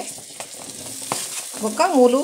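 Raw potato cubes sliding off a steel plate into hot oil and fried masala in a pan, with a steady sizzle and a couple of light clicks of a steel spoon on the plate.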